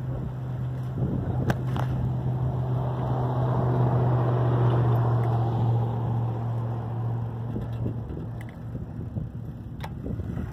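Steady low motor hum of a ridden vehicle, with road and wind noise, growing louder in the middle and easing off near the end; a couple of sharp clicks.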